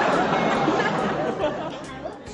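Noisy babble of chattering voices that fades away over the two seconds.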